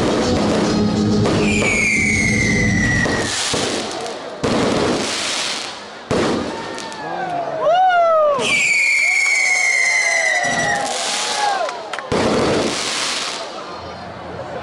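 Daytime fireworks going off overhead: whistling rockets with falling whistles, and several sudden loud bursts of bangs and crackle.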